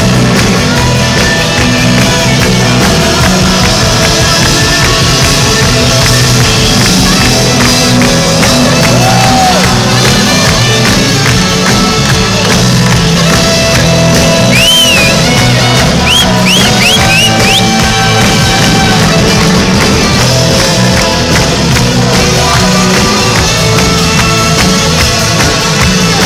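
Live rock band playing at full volume through a PA: electric guitars, bass guitar and a steady drum beat, heard from the audience.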